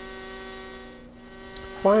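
Gaui T10 two-stroke model helicopter engine, a converted glow engine, running steadily on its run-up stand at full throttle in the last stage of its break-in: a steady, even buzz.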